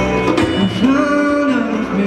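A live band playing a song: a male singer holds a long note through the middle, over electric guitars, piano and a hand drum.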